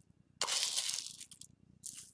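Tablespoon scooping frankincense resin tears and tipping them into a stone molcajete: a gritty crunch and rattle of resin pieces lasting under a second, then a shorter one near the end.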